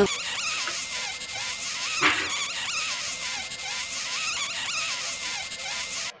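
Buzzy, warbling sound with a wavering pitch that rises and falls over and over, with a short louder hit about two seconds in.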